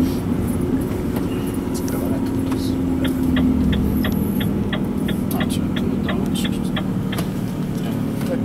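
Renault Trucks T 460 tractor unit cruising in 12th gear, heard inside the cab: a steady engine drone with low road rumble. A run of quick, evenly spaced clicks, about three a second, starts about three seconds in and lasts some three seconds.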